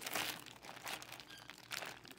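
Plastic candy bag crinkling as it is handled and moved, in a few irregular rustles.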